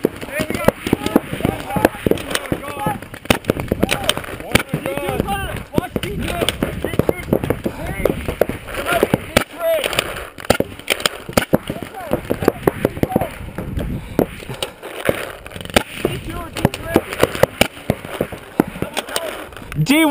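Paintball markers firing in an exchange of fire: sharp pops spread irregularly, often several in quick succession, with players shouting across the field.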